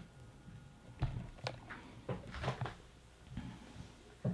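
Quiet room with a few faint, short knocks and rustles from a small child moving about while handling a snake, the clearest about one second and two and a half seconds in.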